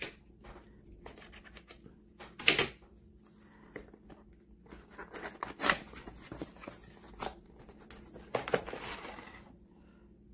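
A cardboard toy box being opened by hand and a clear plastic packaging tray sliding out. Scattered short rustles and scrapes, the loudest about two and a half seconds in.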